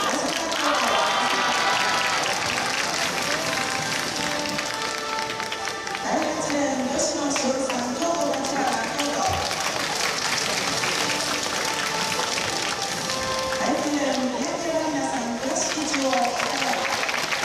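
A stadium public-address announcer's voice calling out runners in turn, over a steady wash of crowd noise and applause from the stands.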